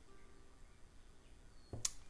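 Quiet room tone with a faint steady hum, broken near the end by a single short click.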